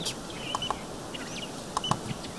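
Quiet outdoor background with scattered short bird chirps. There are a couple of sharp clicks near the end.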